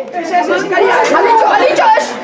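Several voices shouting and calling out over one another, loud and close.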